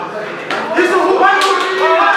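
Several voices call out loudly around the mat, overlapping. Two sharp smacks come about half a second and a second and a half in.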